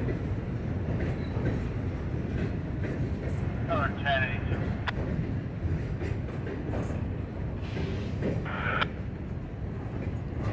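A freight train's boxcars rolling across a steel truss railway bridge: a steady low rumble with occasional sharp clicks from the wheels.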